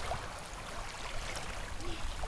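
Faint sloshing of shallow lake water around hands holding a channel catfish under the surface to revive it, over a low steady rumble.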